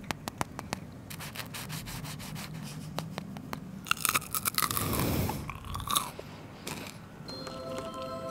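A person biting and chewing crispy air-fried fries and a burger: a run of sharp crunching crackles, then a denser burst of crunching about four to six seconds in.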